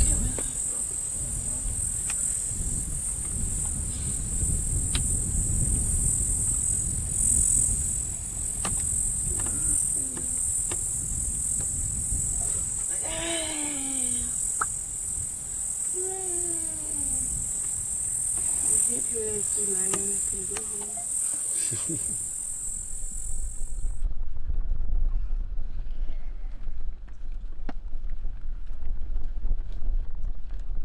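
A loud, steady high-pitched insect buzz from the bush, over a low rumble. It cuts off abruptly about three-quarters of the way through and gives way to a low, gusty rumble of wind on the microphone.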